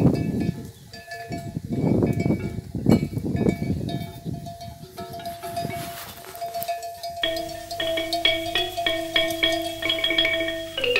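Bells on grazing water buffalo clonking irregularly, with gusts of low rustling noise. About seven seconds in, mallet-instrument music like a marimba starts, a steady run of pitched notes.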